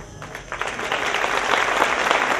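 Audience applauding as the band's last chord dies away, the clapping starting thin and building up over the first second.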